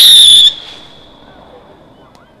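Whistling shot from a Royal Fireworks Ano's Big Box fireworks cake: a loud, high whistle, sliding slightly down in pitch, cuts off about half a second in. A faint trace of the tone lingers and fades after it.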